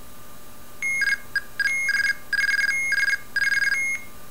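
Arduino blue box playing a stored IMTS mobile-telephone access sequence through a small speaker: a seizure tone and guard tone, then the ANI identifier sent as rapid pulses switching between two high tones at 20 pulses a second, in several short groups. It starts about a second in and stops just before the end.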